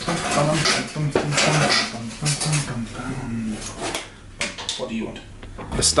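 A man humming a happy little tune in short held notes, with metal tools and parts clinking and rattling as he fits a starter motor to a Harley-Davidson Sportster engine.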